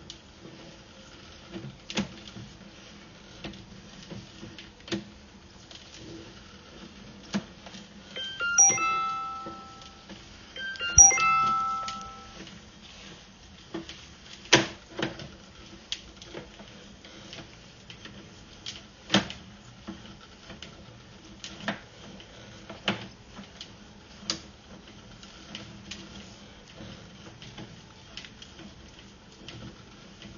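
Two short electronic chimes about two and a half seconds apart, each a quick run of notes falling from high to low, over scattered clicks and knocks while a sewer inspection camera's push cable is pulled back through the pipe.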